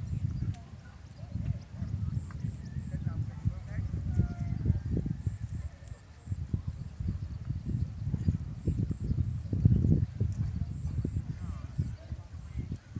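Wind buffeting the microphone in uneven low gusts, with faint distant voices at times.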